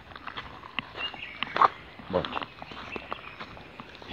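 Footsteps crunching on loose river pebbles and stones, with uneven clicks and clacks as the stones shift underfoot and one sharper clack about a second and a half in.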